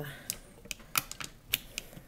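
A string of light, irregular clicks and small knocks as hands handle nylon 550 paracord and the metal binder clips holding the bracelet, adjusting its length.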